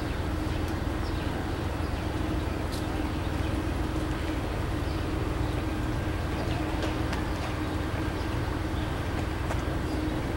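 Steady hum of a standing Amtrak passenger train: a low rumble with one steady mid-pitched tone, and a few faint ticks over it.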